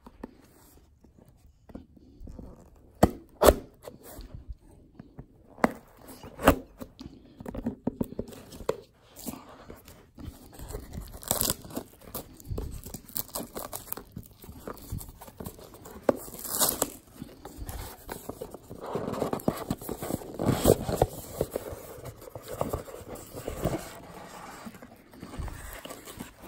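A sealed cardboard trading-card box being unwrapped and opened by hand: intermittent tearing and crinkling of its packaging, with scrapes and a few sharp knocks, busiest about twenty seconds in.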